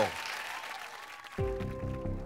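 Studio audience applause dying away, then a tense music cue with steady low bass notes comes in suddenly about a second and a half in.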